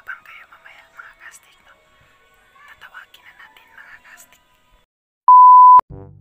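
A single loud, steady electronic beep, one even tone lasting about half a second near the end, following soft whispered talk.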